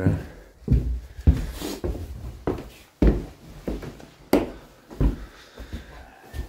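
Footsteps on an indoor staircase: a run of uneven thumps and knocks, about one every half second to a second, with one sharper click a little past four seconds in.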